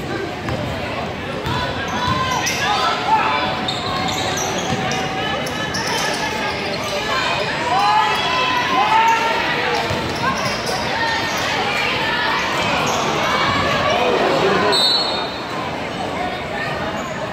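A basketball bouncing on the hardwood gym floor during play, under the voices of spectators shouting and talking in a large gym hall. A short high whistle sounds about a second before the end as play stops.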